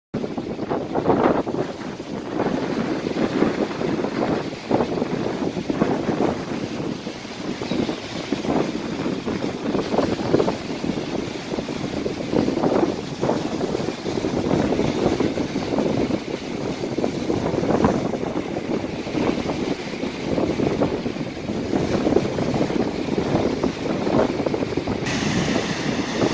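Wind gusting on the microphone over waves breaking on a sandy shore, loud and uneven. About a second before the end it changes to a steady rush of water pouring over a rock weir.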